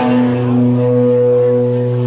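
A low note held steadily through a stage amplifier, a long even drone with a stack of overtones; one higher overtone swells in about halfway through.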